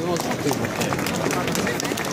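Outdoor crowd sound: many people chattering at once with scattered hand claps.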